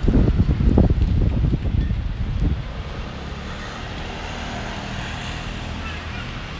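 Wind buffeting the microphone in loud, uneven gusts, dropping off about two and a half seconds in to a steadier, quieter outdoor rumble.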